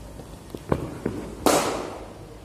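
Running footsteps on artificial turf as a bowler's run-up passes close to the microphone. A few thuds get louder, spaced like strides, and the last is a sharp, loud slap about one and a half seconds in, with a short fading tail.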